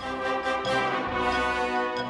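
Orchestra with a brass section playing a held chord, steady throughout, with a low bass note swelling in about a second in.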